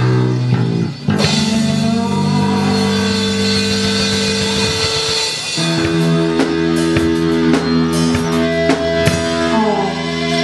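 Indie rock band playing live: electric guitars, bass guitar and drum kit. The music dips briefly about a second in, then carries on with held guitar notes, and the drum hits get stronger from about six seconds in.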